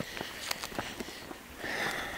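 Footsteps on an asphalt road mixed with handheld-camera handling noise: a scatter of light, irregular clicks, with a soft breathy rustle near the end.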